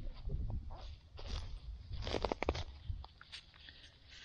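Camera handling noise: rustling and rubbing against the microphone, with a quick cluster of sharp clicks about halfway through, as the camera is moved and set on its tripod. A low rumble from wind on the microphone runs underneath.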